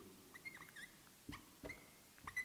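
Faint squeaks of a marker tip dragged across a whiteboard while writing, a few short chirps in the first second, then light taps of the tip on the board.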